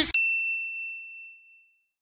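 A single notification-bell ding sound effect: one bright, clean tone struck once just after the start, ringing out and fading away over about a second and a half.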